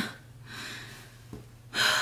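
A woman's breathy exhale trailing off a laugh, then a quick intake of breath near the end.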